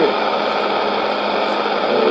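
Shortwave AM broadcast played through a Sony world-band receiver's speaker: a steady hiss of static fills a pause in the announcer's speech, with the last of his words at the very start.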